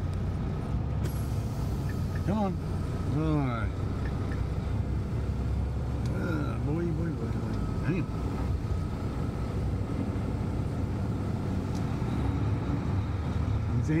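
Semi-truck's diesel engine running with a steady low rumble, heard from inside the cab, with a thin steady tone over it. Short voice sounds come in about two to four seconds in and again around six to seven seconds.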